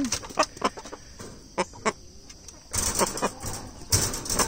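Chickens clucking in short calls, with a rustling burst of wing flapping about three seconds in.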